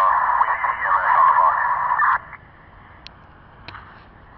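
Radio scanner playing an FDNY fire dispatch transmission: a narrow, tinny voice that cuts off suddenly about two seconds in, leaving low hiss with a couple of faint clicks.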